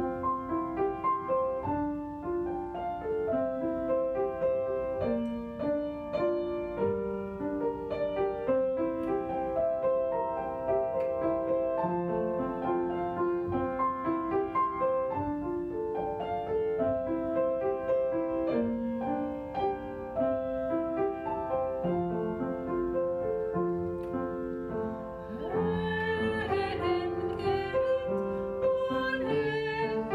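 Slow, calm instrumental music led by piano, one note after another. Near the end a second, wavering melody line joins above it.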